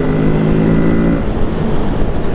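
Kawasaki Z650's parallel-twin engine pulling under full throttle at about 100 km/h with a steady note. The note drops out a little past halfway as the throttle is closed, leaving wind noise.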